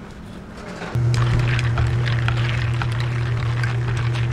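An electric motor hums steadily and loudly, switching on suddenly about a second in and running on past the end, with small clinks of a bar spoon stirring ice in a plastic cup over it.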